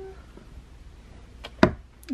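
Two quick sharp clicks about a second and a half in, the second louder, from a small plastic tub being handled and nudged with a paintbrush, over a low steady hum.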